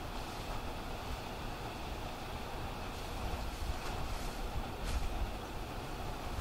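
Wind rumbling on an outdoor microphone, a steady low noise, with a few faint short rustles of dry fallen leaves underfoot.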